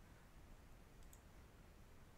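Near silence: faint room hiss, with a faint computer mouse click about a second in.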